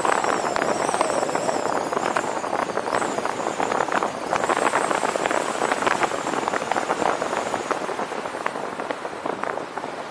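A car driving through city streets, heard from a roof-mounted camera: a steady rush of wind and tyre noise with a rough crackle of wind buffeting the microphone. A faint, thin high whine wavers above it and fades out near the end, as the noise eases off slightly.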